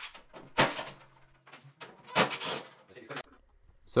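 Empty metal cash-drawer housing being handled and stood up on its side on a table: a few knocks and scraping slides, the loudest about half a second in and a longer scrape a little after two seconds in.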